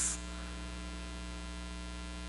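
Steady electrical mains hum with many evenly spaced overtones, carried through the microphone and sound system.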